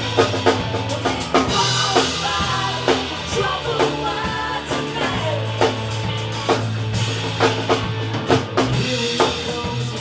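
Live rock band playing an instrumental passage: drum kit with bass drum and snare hits driving the beat under electric guitars and a sustained bass line.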